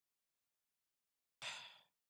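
Near silence, broken about a second and a half in by one short, faint breath-like puff of noise.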